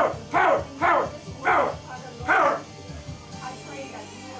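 A voice shouting one short word again and again in prayer, about two times a second, five times over, stopping about two and a half seconds in. Music plays faintly underneath.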